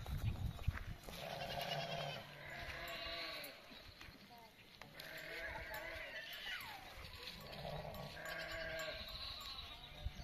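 Sheep and goats bleating, several overlapping calls in repeated bouts about every couple of seconds. A couple of sharp knocks come in the first second.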